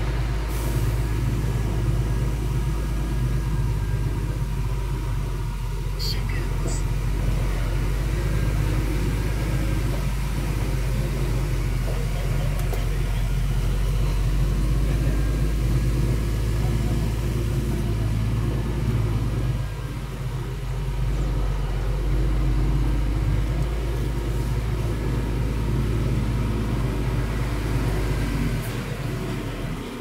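Diesel truck engine running at low speed, heard from inside the cab as a steady low drone while the truck crawls across a yard. It drops in level near the end.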